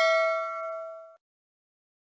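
The ringing tail of a bell-like ding sound effect, the notification-bell chime of a subscribe-button animation. Its few steady pitches fade and then cut off suddenly about a second in.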